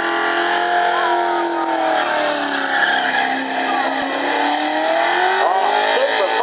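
A car's engine held at high revs while the car slides sideways on spinning rear tyres, with tyres squealing and smoking. The engine note dips slightly midway, then rises and wavers near the end as the revs are worked.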